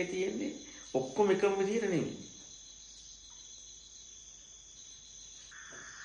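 A voice speaking briefly, two phrases in the first two seconds, over a steady high-pitched trilling of crickets that carries on alone afterwards. A steady hiss joins near the end.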